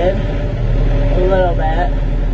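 Tractor engine running steadily at a low idle, with a constant low-pitched rumble.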